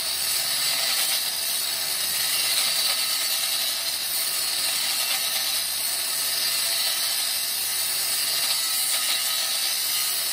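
Angle grinder with a cutting disc slicing a slit into a metal part clamped in a vise, running steadily under load. The grinding hiss is continuous and even, with no break.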